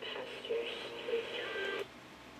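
Sony ICF-A15W clock radio's small speaker playing a station, thin-sounding with no deep bass or high treble, cutting off suddenly near the end.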